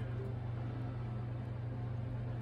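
A steady low hum with a faint hiss and no other sound: background room tone.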